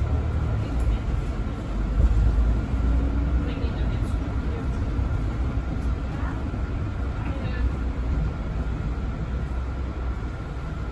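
Mercedes-Benz Citaro 2 city bus running as it drives off and turns, heard from inside the front of the bus: a deep rumble, with a steady thin whine above it.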